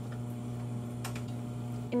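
Steady low electrical hum from the powered-on vape chamber equipment. Two light clicks about a second apart come as the vape tank is pressed onto the chamber's connection site.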